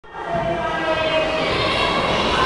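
A sustained chord of several steady tones, fading in over the first moment and held at an even level.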